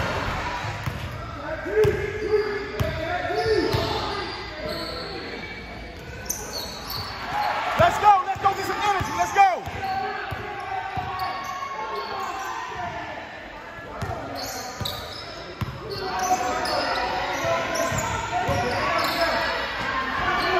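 Basketball game in a gymnasium: the ball bouncing, sneakers squeaking on the court, and players' and spectators' voices, all echoing in the large hall.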